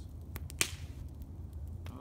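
Wood campfire crackling, with a few sharp pops over a low steady rumble; the loudest pop comes a little over half a second in.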